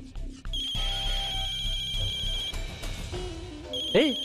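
Mobile phone ringing with a trilling electronic ringtone in two rings, the first about half a second in and the second starting just before the end, over background music.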